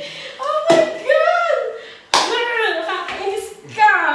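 Excited laughing and shrieking voices during a game of flip cup, with two sharp smacks, one under a second in and one about two seconds in, from a red plastic cup being flipped onto the wooden table or from hands.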